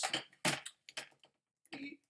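Mostly a man's speech, with a few short, light clicks from a computer keyboard as a word is typed.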